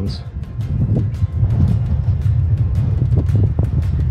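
Wind buffeting the microphone, a loud, steady low rumble, with background music underneath.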